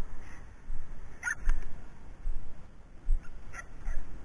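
Uneven low bumping and rustling as someone walks through a dry grass field, with a few short, quick high chirps: two about a second in and three near the end.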